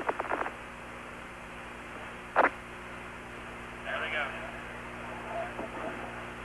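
Hiss and steady hum of the NASA mission radio loop between calls. A short burst comes about two and a half seconds in, and faint voices are heard around four seconds.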